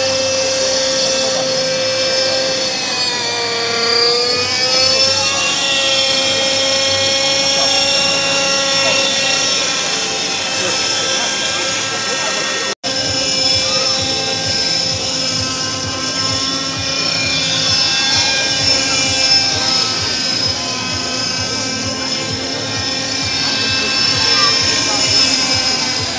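Radio-controlled model helicopter running with a steady high whine. Its pitch dips and recovers once a few seconds in. The sound cuts out for an instant about halfway through, with crowd voices underneath.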